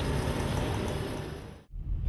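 Street traffic noise, a steady rush with low rumble, fading out and cutting off shortly before the end.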